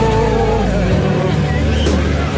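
Pop music with a held, wavering sung melody over steady bass notes.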